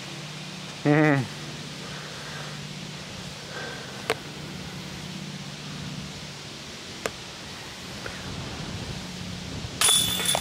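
A disc hitting the chains of a disc golf basket near the end: a bright metallic jangle of the chains as the putt goes in. Earlier, a short vocal sound about a second in and two sharp clicks.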